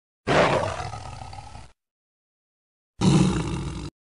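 Two big-cat roars played as a sound effect. The first comes in about a quarter second in and fades over about a second and a half; the second starts about three seconds in and cuts off suddenly, with dead silence between them.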